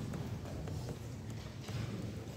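A cloth wiping chalk off a blackboard: a few light knocks, then a rubbing swish near the end, over a low steady hum.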